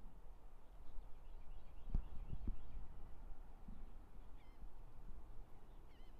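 Low rumble of wind buffeting the microphone with distant surf, a few soft thumps about two seconds in, and faint high bird chirps.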